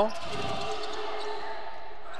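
A basketball being dribbled on a wooden gym floor.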